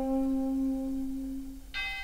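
Big band and orchestra music: one held low note fades away, and about three-quarters of the way through a new, bright saxophone note comes in.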